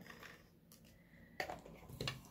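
Faint handling of paper and adhesive: fingers pressing and rubbing a strip of adhesive along the edge of a cardstock card, with a few small clicks, the clearest about a second and a half in.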